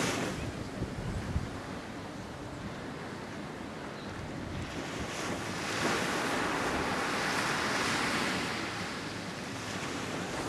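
Wind on the microphone over small waves breaking on a sandy beach: a steady rush that eases for a couple of seconds, then swells louder for a few seconds before settling again near the end.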